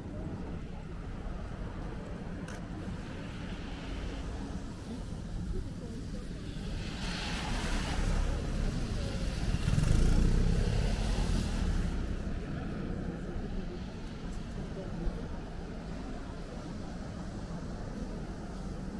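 A car driving past close by on a wet street, its tyres hissing on the wet road: the sound swells over several seconds to its loudest just past the middle, then fades, over a steady hum of city traffic.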